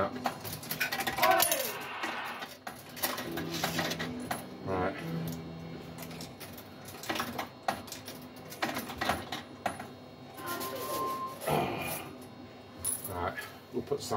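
Tokens fed one after another into a Cloud 999 fruit machine's coin slot, a string of short clicks as each one drops in and the credit counts up.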